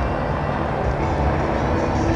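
Helicopter flying overhead: a steady low rumble with a wash of noise over it.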